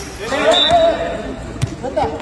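A drawn-out shout over the play, with a few sharp thuds of a football being kicked and bouncing on a concrete court, the loudest right at the start.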